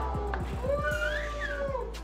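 A cat meows once, a single long call that rises a little and then falls, about halfway through, over background music with a drum beat.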